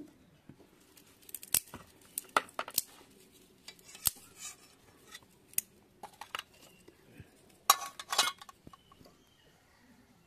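Scattered clicks and knocks of metal utensils being handled, with a louder ringing metallic clatter about eight seconds in.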